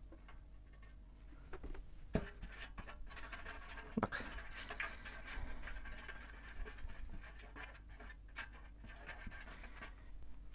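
Silicone pastry brush rubbing across a metal baking tray, spreading oil over it in repeated strokes, with a couple of sharp knocks near the start.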